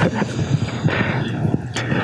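Loud rumbling noise with a scatter of crackles, from the soundtrack of a rocket-triggered lightning video played back through lecture-hall speakers.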